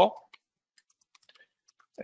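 Faint, irregular key clicks of a computer keyboard being typed on.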